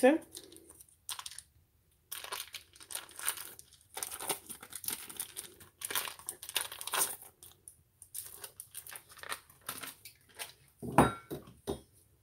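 Foil wrapper of a block of cream cheese being peeled open by hand, crinkling and tearing in irregular bursts, with one louder bump near the end.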